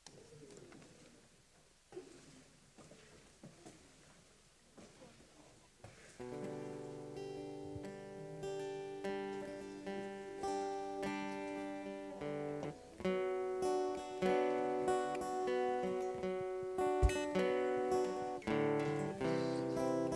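Faint knocks and rustling, then about six seconds in a guitar starts strumming chords and grows louder: the opening of a worship song.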